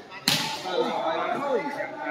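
A volleyball struck hard by hand, one sharp smack about a quarter second in. Voices call out after it.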